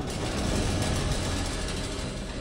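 Video-editing transition sound effect: a steady rushing noise with a low rumble, starting suddenly and easing off slightly toward the end.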